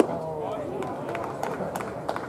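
One sharp crack as the batter swings at the pitch, from the ball meeting the bat or the catcher's mitt. Then voices of people in the stands talking.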